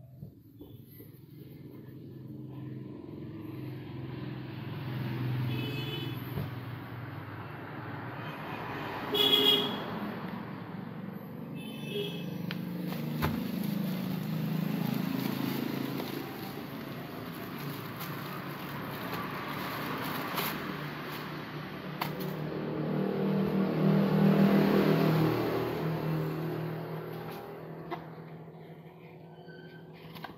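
Road traffic passing, vehicles swelling and fading several times, with short horn toots; the loudest toot comes about nine seconds in, and fainter ones come a few seconds before and after it.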